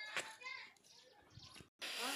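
Faint voices of people and children talking at a distance, with the sound cutting out briefly near the end.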